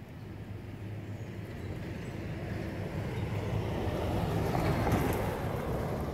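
A motor vehicle engine running, its low rumble growing steadily louder.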